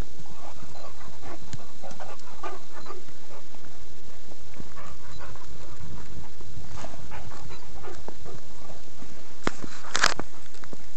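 A dog panting in short rapid breaths close by, in clusters, over the thumps and rustle of quick footsteps on a dirt forest trail. Two sharp clicks near the end.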